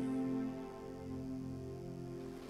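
Soft, sad background music with sustained, held notes.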